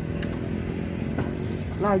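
Small inboard engine of a kato, a small wooden fishing boat, running steadily at low speed with a propeller shaft.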